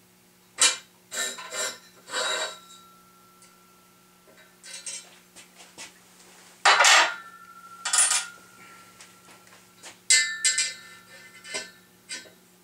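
Steel drill press parts knocking and clinking against the steel column: a string of separate metallic clanks, the loudest about seven seconds in, several of them leaving a short ringing tone.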